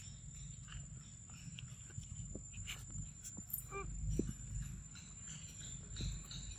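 Macaques foraging on leaf-littered ground: faint scattered rustles and clicks over a low rumble, with one short wavering call a little before four seconds in.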